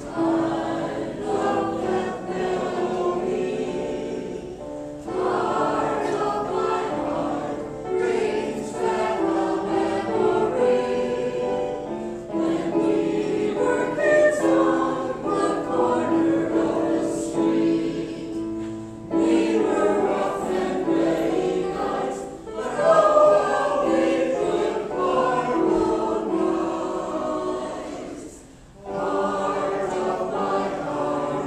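Mixed choir of men and women singing an old popular song in harmony with piano accompaniment, in long phrases with short pauses for breath between them.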